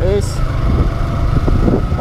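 Yamaha Sniper 150's liquid-cooled 150cc single-cylinder four-stroke engine running while under way, mixed with steady wind rumble on the microphone.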